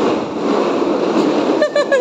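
Plastic wheels of children's ride-on toy cars rumbling steadily over a tiled floor, with a child's short high-pitched voice near the end.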